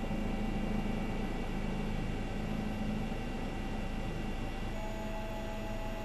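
Steady drone of a helicopter heard from on board: an even hiss under several steady humming tones, which shift slightly about five seconds in.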